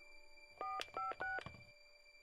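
Phone keypad touch-tones: three short two-note dialing beeps, each about a quarter second long, the upper note stepping higher with each key.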